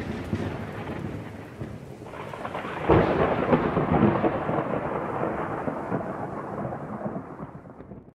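Rolling thunder rumbling down after a crack, swelling again about three seconds in, then fading away near the end.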